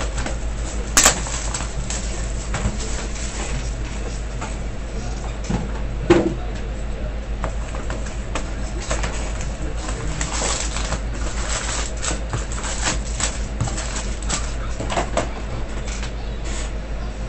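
Cardboard hobby box and its foil card packs being handled: a sharp click about a second in, a thump near six seconds, then a run of crinkling and rustling from about ten to fifteen seconds, over a steady low electrical hum.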